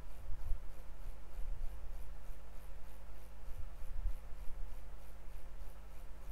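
Low, irregular thumps and rumble over a steady electrical hum and faint hiss, with a faint even ticking about four times a second. This is desk and equipment noise picked up by a microphone while code is edited.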